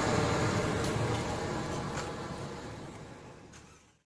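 Steady background noise of road traffic, fading out to near silence by the end.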